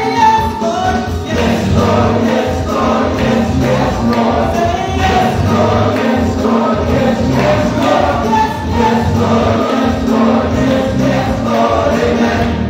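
A praise team singing a gospel worship song together into microphones, over steady accompanying music.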